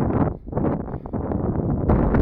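Wind buffeting the camera's microphone: an uneven low rumble that dips briefly a couple of times.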